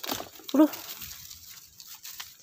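Leaves and vines of long-bean plants rustling as the pods are picked and handled by hand: a sharp rustle at the start, then softer rustling.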